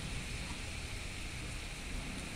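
Pieces of pork frying in a pan with a little seasoning liquid, a steady sizzle.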